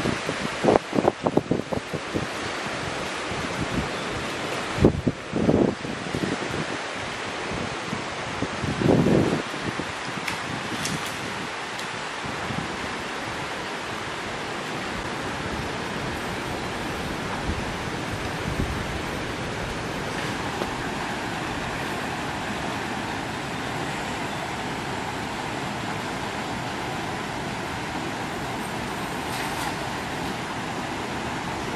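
Steady rushing of a shallow river flowing over stones, with a few irregular low thumps during the first ten seconds.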